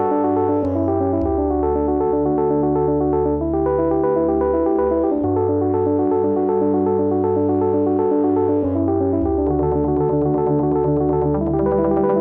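Elektron Digitone FM synthesizer playing a sequenced pattern: a fast run of short, repeating pitched notes over a held bass note that changes about every four seconds. The signal runs through an Elektron Analog Heat MKII analog sound processor.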